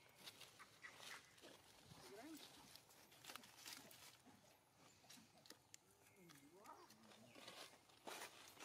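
Near silence: faint rustles and clicks of dry leaves as monkeys move over the forest floor, with a faint wavering voice-like call twice, briefly around two seconds in and longer near the end.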